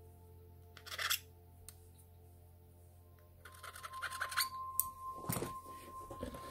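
Hands working a replacement battery into a Samsung Galaxy S8+ frame and handling the opened phone. There is one short scrape about a second in, then from about halfway a run of light clicks and rubbing that grows louder, over faint steady tones.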